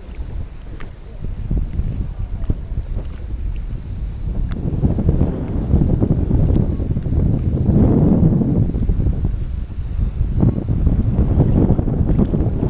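Wind buffeting the microphone in gusts over choppy water, a low rumbling rush that swells loudest about eight seconds in.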